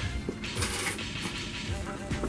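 Muffled rustling and handling noise, with a brief louder rustle about half a second in, as clothing rubs against the camera's microphone.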